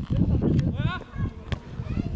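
A football being kicked on a grass pitch: one sharp kick about a second and a half in. A voice calls out just before it, and a low, uneven rumble runs underneath.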